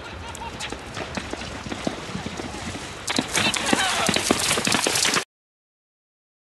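Hoofbeats of a horse cantering on turf. About three seconds in they turn much louder and denser as the horse reaches the water complex, with splashing. The sound cuts off suddenly shortly after five seconds.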